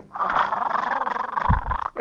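A man's vocal imitation of a death rattle: one long, noisy rattling breath from the throat with no clear pitch, lasting almost two seconds, with a short low thump near the end.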